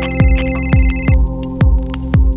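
Electronic background music with a steady kick-drum beat of about two beats a second. Over it a high electronic phone ringtone sounds and cuts off a little over a second in.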